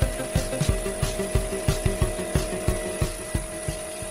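Electric piston air compressor running: a steady hum with a rapid, uneven knocking, supplying air to a foam-generator rig.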